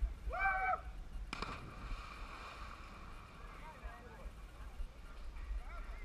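A person plunging feet-first into a deep muddy pool: a sharp splash about a second in, then a few seconds of churning, sloshing water. A short shout comes just before the splash, and faint voices follow later.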